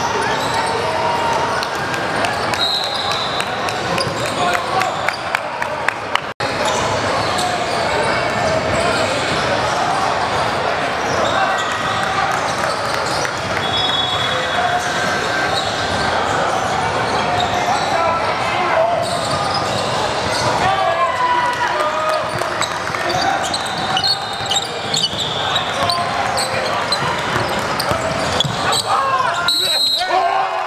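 Live game sound in a large gym: a basketball bouncing on the hardwood court amid players and spectators talking. There is a brief gap about six seconds in.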